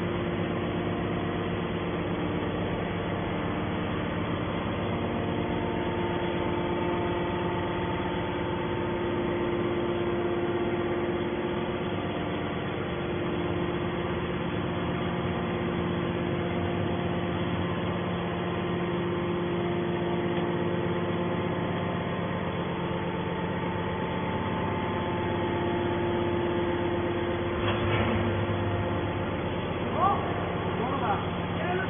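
Hydraulic power unit of a scrap metal baler running: a steady machine hum with a few fixed tones, and a single short knock near the end.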